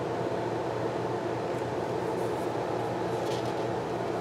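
A steady low hum of background machine noise, with a few faint, soft rustles of paper stickers being handled on a planner page about halfway through and near the end.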